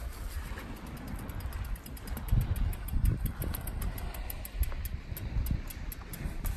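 Wind buffeting the microphone in uneven gusts: a low rumble that swells and drops.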